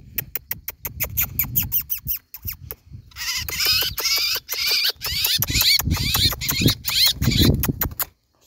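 A fast run of sharp clicks for about three seconds, then a songbird singing quick high chirps and gliding whistles over continued clicking.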